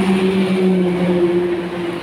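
Road traffic: a steady motor hum, holding an even low drone throughout.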